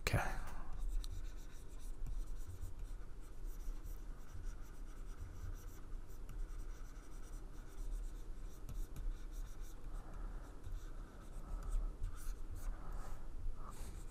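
Plastic stylus of a graphics tablet scratching and tapping across the tablet surface in short irregular strokes while a figure is drawn, over a faint low hum.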